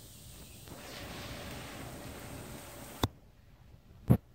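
Heavy monsoon rain falling as a steady hiss. About three seconds in, a sharp click cuts it off suddenly.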